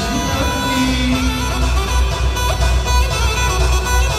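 Loud amplified wedding dance band playing Kurdish dance music through the hall's PA system, an instrumental stretch with no singing, carried by a steady heavy bass beat.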